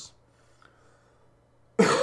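A man coughs once, loudly, near the end, after a pause of near-quiet room tone.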